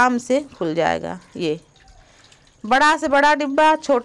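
A woman's voice speaking, with a short pause about halfway through.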